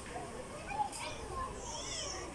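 Indistinct background chatter of shoppers, with children's voices and a brief high-pitched child's call near the end.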